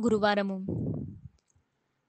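Speech only: a voice reading aloud in Telugu for about the first second, then silence.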